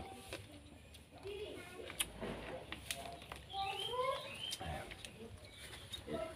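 Quiet background with faint distant voices and bird calls, most noticeable past the middle. A few small sharp clicks are heard throughout.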